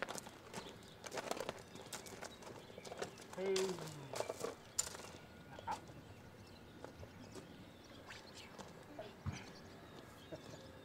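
Hooves of a Percheron draft horse stepping on gravel, a series of crunching steps over the first few seconds. A brief human voice with falling pitch comes about three and a half seconds in, and only a few scattered steps follow.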